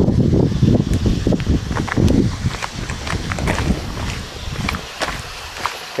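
Footsteps scuffing and crunching on gritty limestone rock, irregular, over a low uneven rumble that is strongest in the first couple of seconds and then eases.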